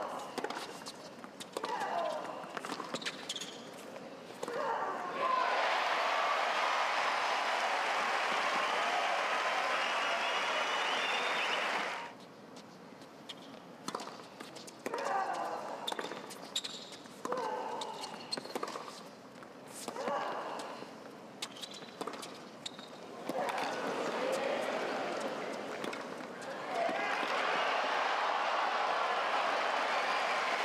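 Tennis ball bouncing and being struck by rackets in a rally, then crowd applause for about seven seconds starting some five seconds in. Later come more ball bounces and racket hits, and the applause rises again near the end.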